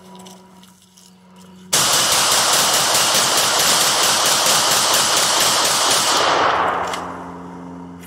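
Rapid semi-automatic gunfire from an Emperor Arms Cobra 12 gas-piston 12-gauge shotgun, fed from a drum magazine, and a rifle fired at the same time. It starts suddenly about two seconds in and runs as one continuous barrage for about four and a half seconds, then dies away.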